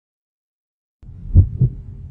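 A heartbeat sound effect: a low double thump, lub-dub, over a low steady hum that starts about halfway in after silence.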